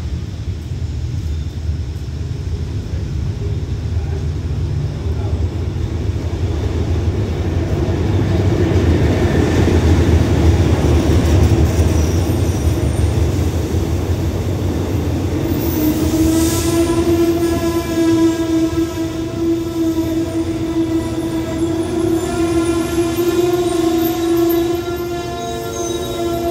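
Diesel-hauled express passenger train arriving: a low rumble that builds to its loudest about ten seconds in as the locomotive passes. Then, from about two-thirds of the way through, a long steady squeal as the carriages slow along the platform.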